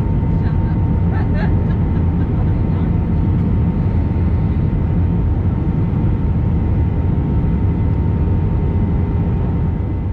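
Airliner cabin noise on final approach: a steady rumble of engines and airflow with a faint steady whine above it. Faint voices come through briefly a second or so in.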